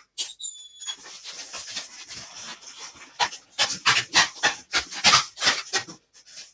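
Latex 260 modelling balloon rubbing and squeaking under the hands as it is twisted. There is a short high squeak about half a second in, then softer rubbing, then a run of sharper rubbing squeaks over the last three seconds.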